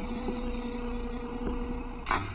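Steady low drone from the film's soundtrack: an even hum with two held low tones and a faint hiss over it, unchanging throughout.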